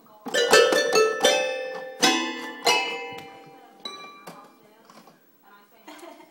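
Pink toy keyboard played by a baby: several keys struck together at a time in four quick clusters of notes, each ringing out and fading, then a couple of fainter single notes.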